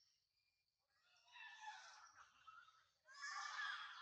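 A macaque giving two hoarse, breathy calls, each about a second long, the second louder.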